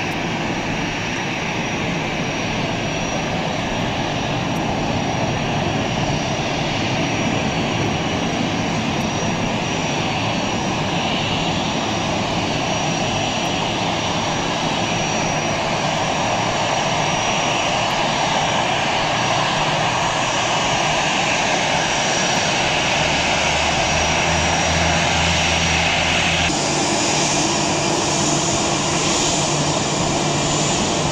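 Twin turbofan engines of an Airbus A320-family airliner running at taxi power: a steady jet roar with a thin high whistle. About three-quarters of the way through the sound changes abruptly, becoming closer and brighter.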